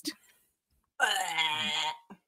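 A person's voice moaning for about a second, one drawn-out pitched sound with no words, starting about a second in after a short pause.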